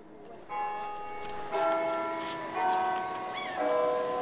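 Bell-like chiming notes, a new ringing note or chord about once a second, each held until the next.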